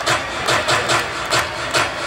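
Live rock band playing amplified through the stage PA, driven by a steady beat of sharp percussive hits about three a second over a low drum thump.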